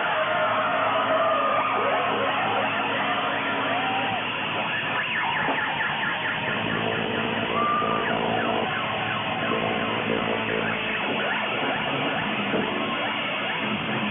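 Amplified stage noise at a live metal gig: several wavering, siren-like squeals slide up and down over a sustained drone from the band's rig.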